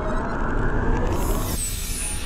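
Cinematic logo sound design: a dense low rumble fades away, and about a second in a bright, hissing whoosh rises as the low end drops out.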